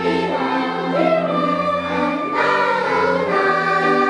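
Children's choir singing a Korean children's song in sustained phrases, accompanied by strings.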